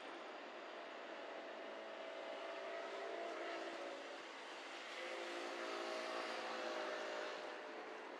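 A motor engine droning steadily, growing louder in the second half and easing off near the end.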